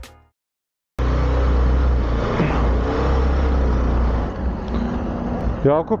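About a second of silence, then steady city road-traffic noise with a deep low rumble; a man's voice starts just before the end.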